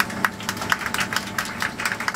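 Scattered clapping from a few passengers inside an airliner cabin, quick irregular claps over the steady hum of a Boeing 767-200ER taxiing after landing.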